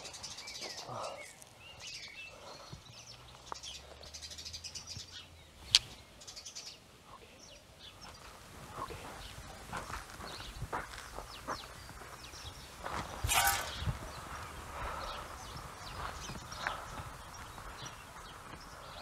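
Outdoor ambience of small birds chirping and tweeting in short scattered calls, with a sharp click about six seconds in.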